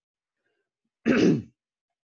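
A man clears his throat once, a short burst about a second in.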